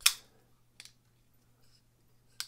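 Petrified Fish PF949 flipper knife flipped open: one sharp metallic snap as the blade swings out and locks, then a fainter click just under a second later. The blade is being tested right after a pivot screw adjustment, its action judged "even nicer" with no blade play.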